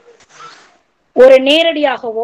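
A woman speaking, her voice starting just past the middle, after a short soft rustling noise about half a second in.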